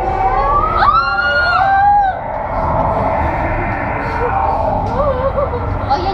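Eerie sliding tones from the ride's ambient soundtrack. They rise, then hold for about a second and stop about two seconds in, over the murmur of a waiting crowd.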